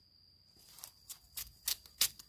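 Fresh bamboo shoot being cut with a knife and its husk stripped by hand: several short, sharp cracks in the second half.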